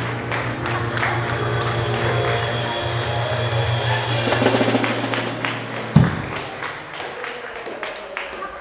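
A live band holds out a song's closing chord over a steady low bass note with drums, then ends on one sharp accent hit about six seconds in, after which the music dies away.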